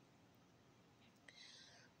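Near silence: a pause in the narration, with a faint breath drawn in near the end, just before the voice resumes.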